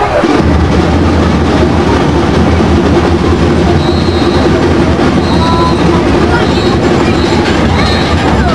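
Drum and lyre band playing: a dense, loud mass of marching bass and snare drums that starts suddenly about half a second in, with short high notes now and then.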